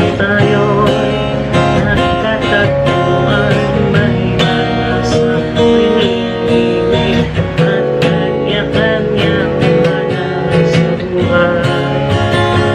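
Acoustic guitar strummed in a steady rhythm, with a man singing along.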